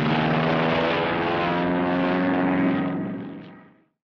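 Drone of a propeller aircraft's piston engines, a steady multi-toned hum that rises a little in pitch about halfway through and fades out over the last second.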